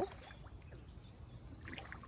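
Faint sloshing of shallow pond water as someone wades in wearing boots.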